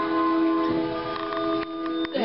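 Upright piano: a held chord dying away slowly, with a couple of soft knocks near the end.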